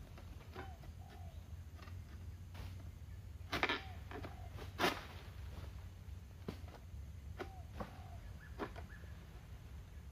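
Sharp cracks and snaps from an egrek, a long-pole harvesting sickle, cutting at an oil palm's crown, loudest twice around the middle, over a steady low rumble. A bird gives a short two-note call three times, every three to four seconds.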